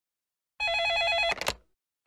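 A telephone's electronic ring: one short burst of fast two-pitch warbling trill, cut off by a couple of sharp clicks.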